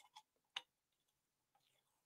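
Near silence with a few faint, brief clicks in the first half second.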